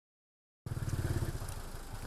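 Truck engine idling with a steady, even pulse, starting abruptly after a moment of silence.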